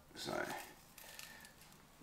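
A single short spoken word, then near silence with only faint room noise.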